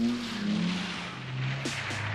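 Electronic music: a descending synthesizer swoop over a hiss, like a passing car, then a fast electronic pulse starts near the end.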